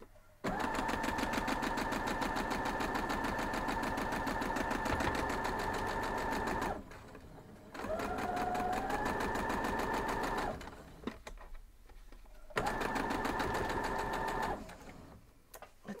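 Electric sewing machine stitching a seam in three runs: a long run of about six seconds, a second that speeds up as it starts, and a short run of about two seconds. Each run is a steady motor hum with a rapid, even patter of needle strokes.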